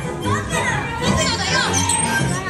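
Dark-ride show soundtrack: music playing with several children's voices calling and shouting over it.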